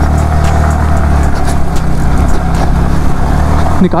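Yamaha R15's single-cylinder engine running at low, steady revs as the bike is ridden through a shallow stream over loose rocks, with water splashing and scattered knocks of stones under the tyres.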